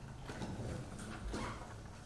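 Quiet room with a few faint knocks and taps, the clearest about a second in.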